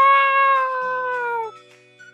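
A person's voice giving a long, held animal cry for a toy character, lasting about a second and a half and sagging slightly in pitch before it breaks off. Soft background music runs underneath.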